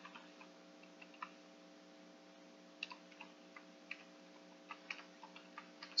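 Computer keyboard keys being pressed, a dozen or so faint, irregularly spaced clicks, over a faint steady hum.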